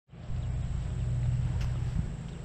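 Ford 3600 tractor engine idling with a steady low rumble.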